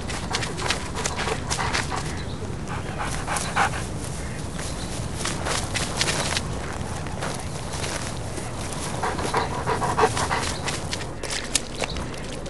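A dog panting as it runs through long grass, with the swish and patter of its movement.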